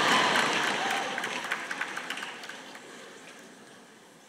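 Audience applauding, loudest at the start and fading away over the next few seconds.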